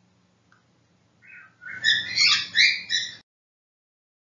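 Short high-pitched animal chirps in a quick run, starting a little over a second in and cutting off suddenly about two seconds later.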